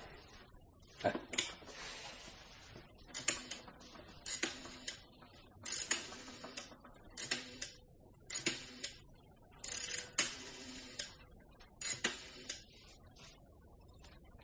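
A rotary telephone dial being pulled round and whirring back, about seven times in a row every second or so, as a telephone number is dialled. A couple of sharp clicks come just before the dialling.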